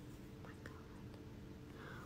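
A woman's faint whispered "oh my God" about half a second in, over quiet room tone with a faint steady hum.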